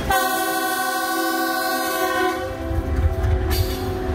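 Locomotive air horn sounding one long blast of several tones at once for about two and a half seconds. Then the low rumble of the locomotive and its loaded ballast wagons passing beneath.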